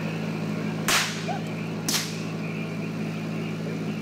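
Two gunshots about a second apart from a gun firing blanks. Each shot rings briefly, over the steady low hum of the boat's motor.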